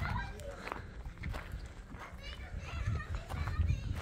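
Voices of other people chattering at a distance, children's voices among them, over a steady low rumble.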